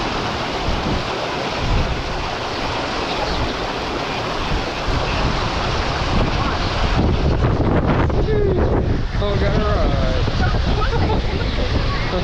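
Water rushing steadily down an open water-slide flume, a dense continuous hiss. About seven seconds in it turns to a heavier low rumble of wind buffeting the microphone, with faint voices in the background.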